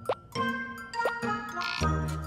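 Light, playful cartoon background music with two short cartoon 'plop' sound effects, each a quick falling blip, about a second apart.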